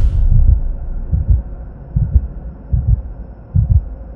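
Intro sound effect of deep bass pulses in a heartbeat-like rhythm, about one a second, over a faint steady hum.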